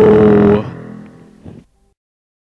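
The end of a deep, growled monster-voice shout of "No!", held loud for about half a second, then trailing away and fading out well before the end.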